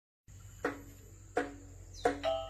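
Two single struck notes on a caklempong, a set of small bronze kettle gongs, each ringing on, the first about half a second in and the second about a second and a half in. Under them runs a steady high insect drone.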